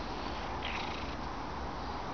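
Domestic cat purring close to the microphone, under steady outdoor noise, with a faint bird chirp about half a second in.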